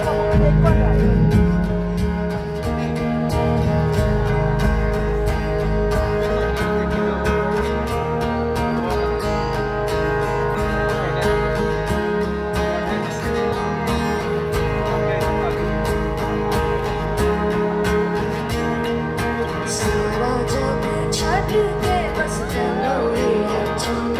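Live music over a concert PA: acoustic guitars strumming with strong bass and held tones underneath, with a woman singing.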